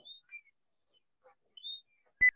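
Faint bird chirps: three short, high chirps, one at the start, one about a third of a second in and one near the end.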